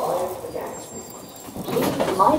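Running noise inside a London Underground carriage as the train comes into a station. The on-board recorded announcement voice begins near the end.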